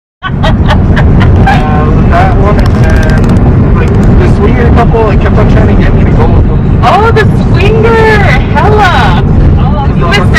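Car cabin road noise, a loud steady rumble, with voices talking indistinctly over it.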